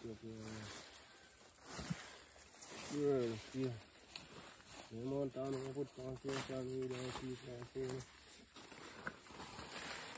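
A man's voice in three stretches: a short one at the start, another about three seconds in, and a longer drawn-out one from about five to eight seconds in, with quieter gaps between.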